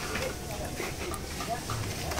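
Faint, low voices over quiet background noise.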